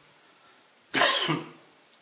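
A man coughs once, a short dry cough about a second in.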